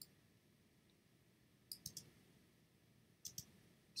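Faint computer mouse clicks over near silence: a single click at the start, then two short clusters of quick clicks, one a little before two seconds in and one near the end.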